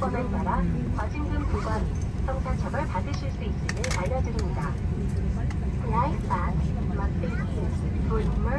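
Airliner cabin noise while a Boeing 737 taxis: a steady low rumble from the engines and rolling, with indistinct passenger voices talking over it.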